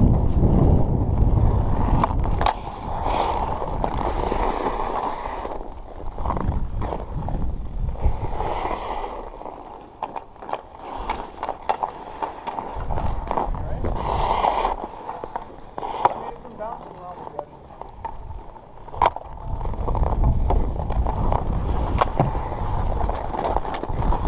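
Ice skate blades scraping and carving on outdoor rink ice, with sharp clicks of hockey sticks hitting the puck and the ice scattered through, over a low rumble of wind on the moving microphone.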